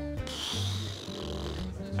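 Background party music with a steady bass line, and a person's breathy exhale, a hiss of breath lasting over a second.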